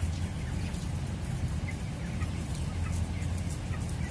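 A large flock of 23-day-old MB Platinum Japfa broiler chickens giving short scattered peeps and clucks over a steady low hum.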